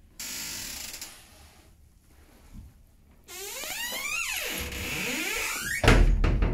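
Wardrobe door creaking as it swings, a pitched squeal gliding up and down for about two and a half seconds, then a loud thump near the end; a brief rustle comes earlier, just after the start.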